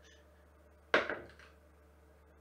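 A die rolled for an attack lands on the table: one sharp knock about a second in, followed by a short clatter that dies away.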